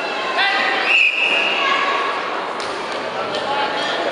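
Voices and chatter echoing in a large sports hall, with a short, high, steady whistle blast about a second in.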